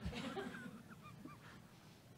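Faint voices off the microphone, with a few short rising and falling vocal sounds in the first second and a half that then die away.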